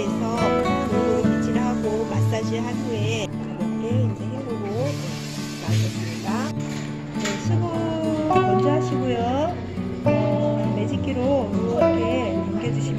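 Background music: a song with a singing voice over steady accompaniment.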